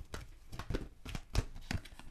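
Oracle cards being handled and drawn from the deck over a wooden table: a scattering of light clicks and taps, about half a dozen in two seconds.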